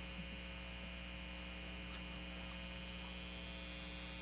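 Steady, faint electrical mains hum, with one faint click about two seconds in.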